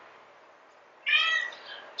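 A domestic cat meowing once, about a second in, a call of about half a second that fades away. The cat is meowing for food.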